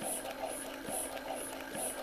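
Medela Pump In Style electric breast pump running with no tubes attached, turned up to setting 5: a steady motor hum with a regular pulse about twice a second.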